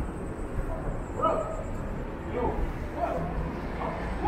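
A dog barking in short, high yaps, four or five times, over the low rumble of city street traffic.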